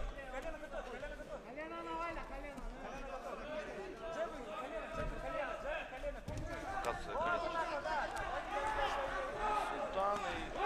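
Men's voices talking throughout: speech, with no other sound standing out.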